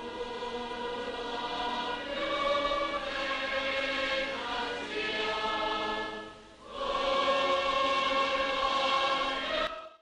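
Many voices singing together in long held notes, played from an archival tape recording. The singing dips briefly about two-thirds of the way through, swells again, and is cut off abruptly just before the end.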